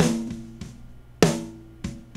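Soloed rock snare drum track played back through a Neve 1073 EQ and a 1176 compressor set with slow attack and fast release for about two to three decibels of gain reduction. Two hard snare hits a little over a second apart each leave a pitched ring that fades, with a fainter stroke near the end.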